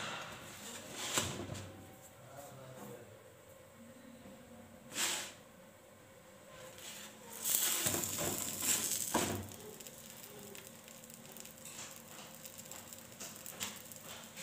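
Batbout pan bread being handled on a dry, flat griddle pan: a few soft taps, then a longer rustling scrape about eight seconds in as the bread is turned over.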